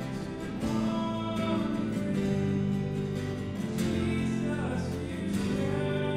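Contemporary worship band playing a song: strummed acoustic guitar, electric guitars, keyboard and drum kit, with voices singing over them.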